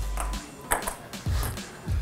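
Table tennis rally: the ball clicking off paddles and the table four times, about one hit every half second.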